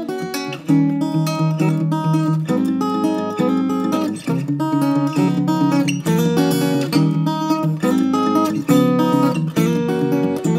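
A C.F. Martin Custom Shop Size 5 Terz acoustic guitar with sinker mahogany back and sides, played fingerstyle: a steady run of plucked notes and ringing chords.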